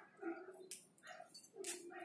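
Faint, short animal calls in the background, a few brief quiet blips.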